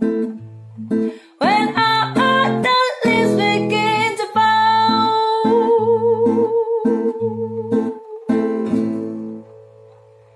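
Nylon-string classical guitar strumming chords while a woman sings, holding a long wavering note in the middle; the last chord rings and fades near the end.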